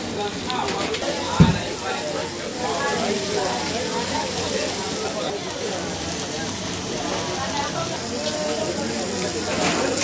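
Voices chattering in the background over the sizzle of lobster grilling on a hot cast-iron grill pan, with one low thump about a second and a half in.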